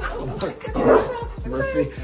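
A pet dog making excited sounds as it greets a family member who has just come home, with people's voices alongside; the loudest sound is a short burst just under a second in.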